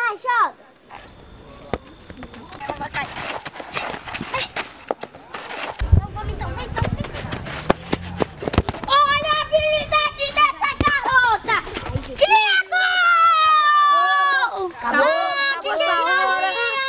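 A ball being kicked about on a dirt pitch, heard as scattered sharp knocks. From about nine seconds in, several children shout and scream in high voices.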